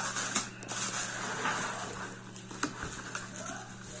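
Plastic packaging bag crinkling and cardboard box flaps rubbing as a boxed portable speaker is pulled out of its packaging by hand. The rustling is irregular, with a few sharper crackles.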